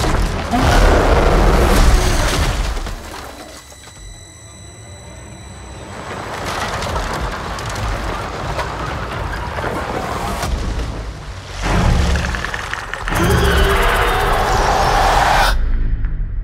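Film trailer score: dramatic music with heavy booms and crashing impacts. It drops low for a few seconds, builds, strikes a sudden hit and then cuts off abruptly near the end.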